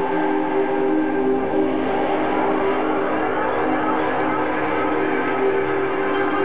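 Live electronic music: synthesizer chords held steadily with no beat, the sound dull with no high end.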